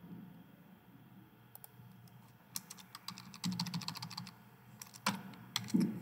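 Typing on a computer keyboard: three short runs of light key clicks.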